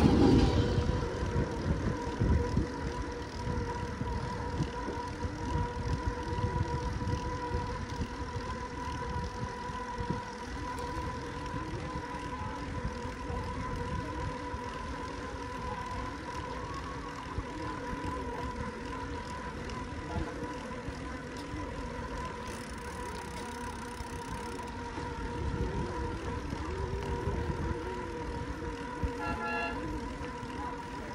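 Wind noise buffeting the microphone of a road bike riding along a country road, with tyre and road noise beneath and a faint steady hum.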